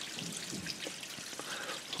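Water trickling down inside a PVC drain pipe, a quiet steady running sound from water lines being flushed.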